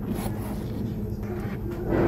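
A bag's zipper being pulled open, the rasp building and growing louder toward the end.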